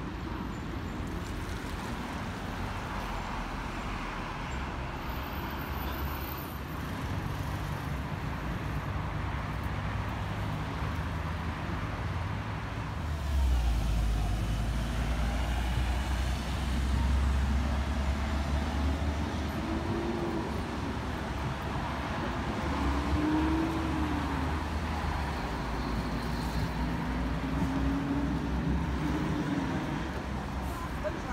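Road traffic: a steady rumble of passing vehicles, with a heavy vehicle's engine rumble swelling about 13 seconds in, and engine pitch rising and falling several times near the end.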